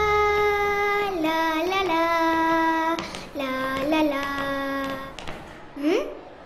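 A child's voice singing long held notes in two phrases, with small slides between pitches, then a short rising sound near the end.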